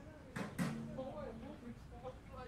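Two sharp knocks about a quarter of a second apart, followed by a low steady hum lasting about a second, over faint voices of people nearby.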